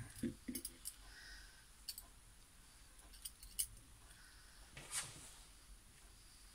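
Faint, scattered small metallic clicks of a belt buckle being handled and fitted by hand, with a slightly longer, louder click about five seconds in.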